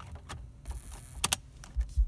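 Plastic clicks of a Pioneer AVH-4200NEX car stereo's detachable faceplate being pressed back onto the head unit, with two sharp clicks in quick succession a little past the middle as it latches into place, and a low knock near the end.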